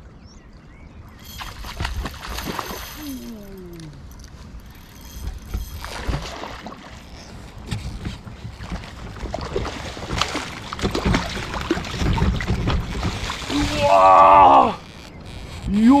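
Water splashing and sloshing as a hooked chub fights at the surface beside a float tube, heaviest near the end as it is brought to the landing net. A short vocal exclamation sounds near the end.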